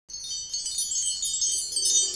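A bright, high wind-chime shimmer, many tinkling tones at once, starts suddenly after silence: a sparkle sound effect marking a new song's title card.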